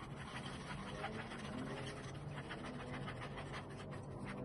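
A drinking straw stirring soapy water on a paper plate, its tip scraping and ticking against the plate in quick, faint strokes, several a second.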